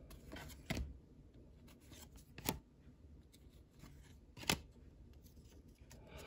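A stack of baseball cards being handled and shuffled by hand, with faint rustling of card stock and three sharp clicks of card edges about two seconds apart.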